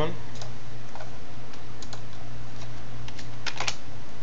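Irregular clicks of a computer keyboard and mouse, about a dozen in all, bunched closer together near the end, over a steady low hum.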